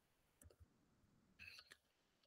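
Near silence with a few faint computer keyboard clicks, about half a second in and again around a second and a half in.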